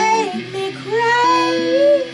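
A woman singing a wordless, sliding vocal line over held electric guitar notes.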